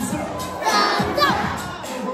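A group of young children shouting and calling out, with background music still playing; a high child's voice slides sharply upward about a second in.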